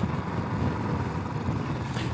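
Royal Enfield Classic 500's single-cylinder engine running steadily at road speed, mixed with wind and road noise at the helmet microphone.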